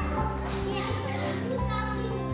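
Young children's voices and chatter while playing, over background music with held bass notes and a melody.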